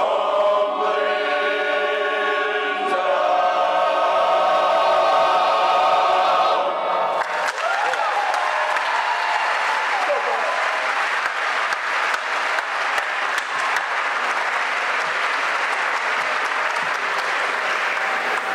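A male choir singing unaccompanied, ending on held chords. About seven seconds in, the audience breaks into sustained applause.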